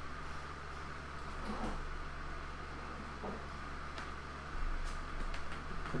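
Steady low hum of room noise with a few faint knocks.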